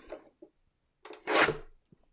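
A paper trimmer's blade sliding through a sheet of patterned paper in one short cut, about a second in.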